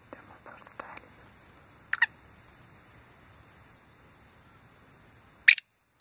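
Black francolin (kala teetar) calling: a short, sharp double note about two seconds in, then a loud call starting near the end, the first note of its harsh call series. A few faint ticks come in the first second.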